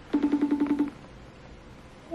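iPhone FaceTime outgoing ringing tone: one quick trilling burst of fast, even pulses at a steady pitch, lasting under a second, while the call waits to be answered.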